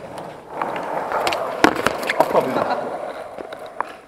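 Skateboard wheels rolling on concrete, with one loud, sharp clack of the board about one and a half seconds in and a few lighter knocks around it.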